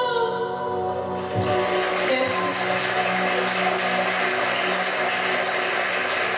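A sung note and its backing music end in the first moments, then audience applause starts about a second and a half in and carries on steadily.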